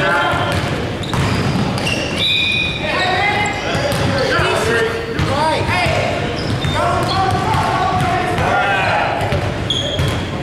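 Basketball shoes squeaking on a hardwood gym floor and a basketball bouncing during play, with players' shouts echoing in a large gym. Short high squeaks come in several clusters.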